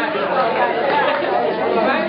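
Many voices talking at once: crowd chatter, with no single voice standing out.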